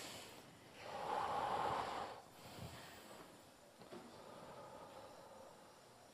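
A person breathing out audibly through the nose or mouth during a seated forward-bend stretch: one long breathy exhale about a second in, lasting about a second, then only faint breathing.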